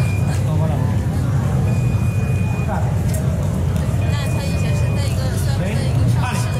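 Indoor fencing hall ambience: a steady low rumble with scattered voices and footwork on the piste. A short, steady high electronic beep sounds twice, about two seconds in and again past four seconds.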